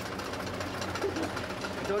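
Broom-sewing machine running with a steady hum and a fast, even clatter of ticks.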